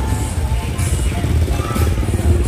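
Busy street at night: music with strong bass from roadside bars, mixed with the noise of motorbike and car traffic.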